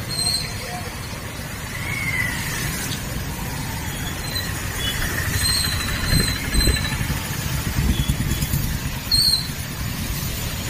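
A motorcycle ridden through shallow floodwater: a steady low rumble of engine, wind and water that swells in the second half. Several short high-pitched squeaks sound over it.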